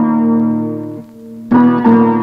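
Film background score: a held keyboard chord fading away, then a second chord struck sharply about one and a half seconds in.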